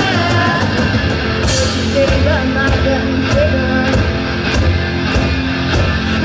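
Live rock band playing loud and steady: electric guitars and a drum kit with several cymbal crashes, and young female voices singing.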